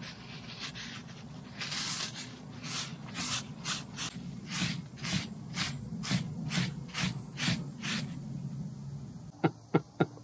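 Paper towel rubbing and scraping the salt, brown sugar and dill cure off cured bluefish fillets on a plate, in quick repeated strokes of about three a second that stop about eight seconds in. A few short sharp sounds, louder than the rubbing, follow near the end.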